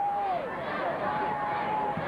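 Football crowd in the stands: a steady babble of voices with two long, held shouts, one right at the start and one about a second in, as the play begins.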